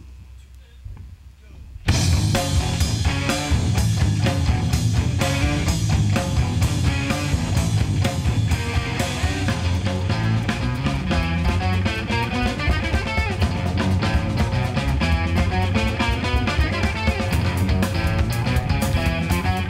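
A live jazz-funk band starts playing suddenly about two seconds in after a quiet pause: electric guitars, bass, drum kit and congas together on a steady beat.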